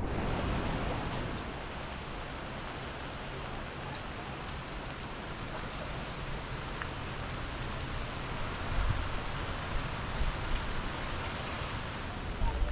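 Steady heavy rain falling on trees and foliage, an even hiss with scattered drop ticks and a few low bumps in the second half.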